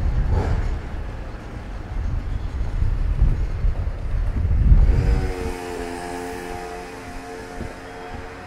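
Low wind rumble buffeting the microphone for about five seconds. It then drops away suddenly, leaving music with held, pitched notes.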